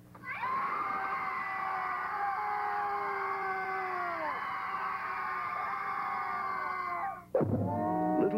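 Several people screaming in horror together in one long, held scream of about seven seconds, with some voices sliding down in pitch, before it cuts off suddenly.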